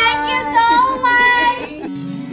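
Background song: a high-pitched singing voice holding long, wavering notes over a steady low accompanying tone, breaking off abruptly near the end.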